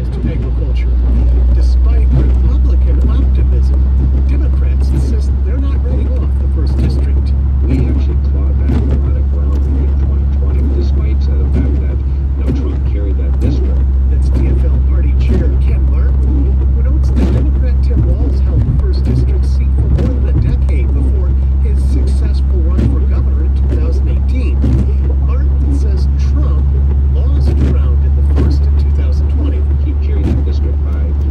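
Steady low road rumble and tyre noise inside a car travelling at highway speed on wet pavement, with an indistinct voice-like sound underneath.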